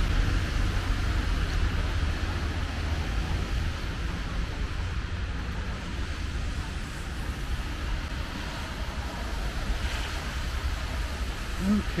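Wind buffeting the microphone as a steady low rumble, over an even hiss of rain and wet outdoor ambience.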